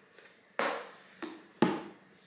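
A woman's two short breathy exhalations, a quiet excited laugh, about half a second and a second and a half in.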